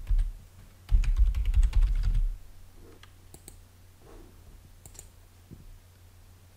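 Typing on a computer keyboard: a quick run of keystrokes starting about a second in and lasting just over a second, then a couple of single clicks a few seconds later, over a faint low hum.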